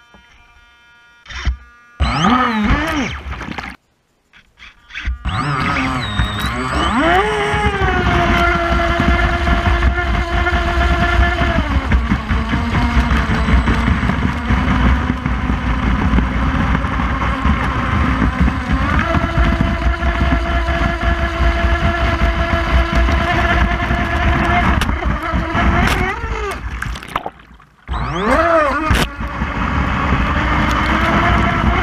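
Proboat Stiletto 29 RC catamaran's brushless motor whining at speed with water and spray rushing against the hull. The whine rises and falls with the throttle, and the sound cuts out briefly twice, just after the boat gets going and near the end.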